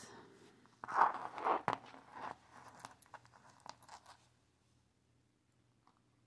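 Plastic beads and metal charms on a chunky beaded chain clicking and rustling as they are handled with jewellery pliers. The clicks are scattered over the first few seconds, then stop.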